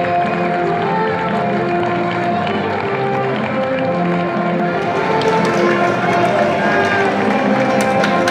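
Music: a slow melody of held notes.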